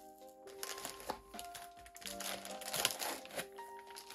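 Soft background music of held melodic notes, with the crinkling and rustling of a clear plastic packaging bag as it is handled.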